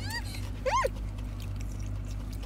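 A young girl making two short, high-pitched whiny squeals, each rising and falling in pitch, the second about two thirds of a second in, over the steady low hum of a car cabin.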